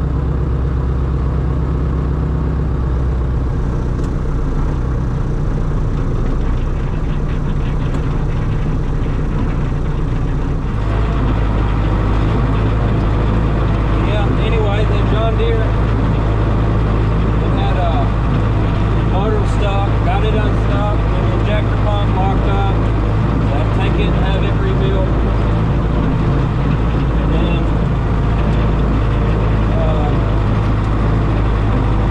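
Belarus 825 tractor's non-turbo diesel engine running steadily, heard from inside the cab. About eleven seconds in it steps up to a louder, deeper steady note.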